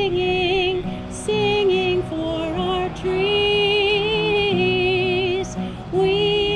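A woman singing a slow song in long held notes with vibrato, accompanied by acoustic guitar.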